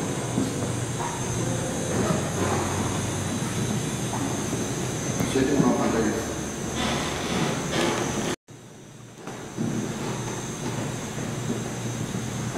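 Steady room noise with faint voices. The sound cuts out suddenly about eight seconds in, then comes back quieter for about a second before rising to its earlier level.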